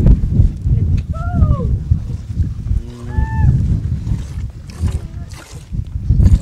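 Goats bleating: a short call falling in pitch about a second in, then a second, steadier call about three seconds in, over a steady low rumble.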